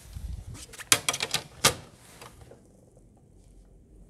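Drafting tools handled on a drawing board: a low rub as the plastic set square is shifted across the paper, then a quick run of sharp clicks and taps lasting under a second, the loudest two about three-quarters of a second apart.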